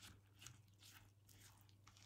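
Faint, rhythmic scraping and squishing of a silicone spatula stirring thick, floury pumpkin cake batter in a ceramic bowl, a few strokes a second.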